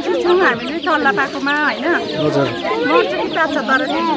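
A batch of young chicks peeping continuously, many quick high chirps overlapping.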